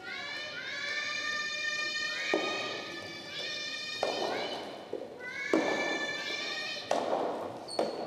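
Several young women's voices shouting long, drawn-out high calls that overlap and slide up at the start, in the first half and again for a second or so later: the players' and team-mates' shouts of encouragement in a soft tennis match. A few sharp thuds of a soft tennis ball bouncing on the hall floor come between and under the calls.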